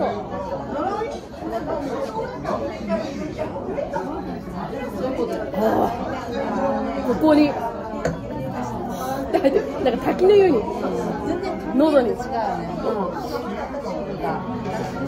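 Chatter of several people talking at once in a restaurant dining room, a steady mix of overlapping voices.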